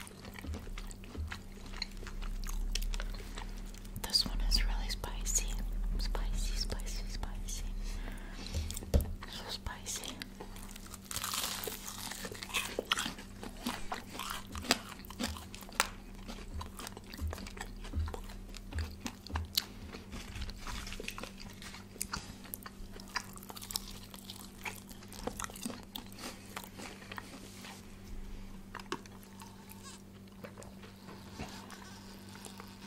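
Close-miked chewing and biting of crispy fried chicken by two people, with crunches and wet mouth clicks, and a louder crunchy stretch about a third of the way in.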